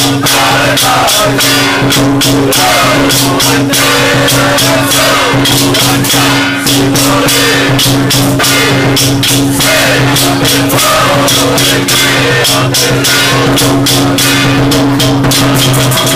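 Loud Taiwanese temple ritual music accompanying a barrier-sealing rite: rapid, dense percussion strikes with a jangling, rattling character over two steady low droning tones, and a wavering melodic line above.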